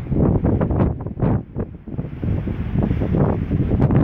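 Wind buffeting the microphone in loud, uneven gusts, a low rumbling rush with no steady tone.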